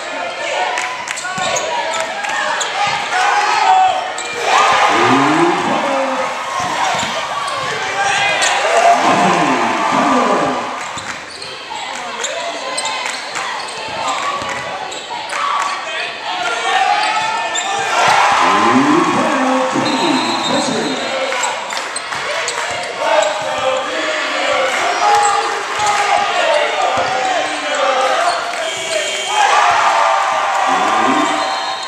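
Live basketball game sound in a large gym: a basketball bouncing on the hardwood court amid indistinct voices of players and crowd, all echoing.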